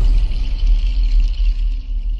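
Channel logo sting music: a deep boom with a sustained low rumble and a high shimmer above it.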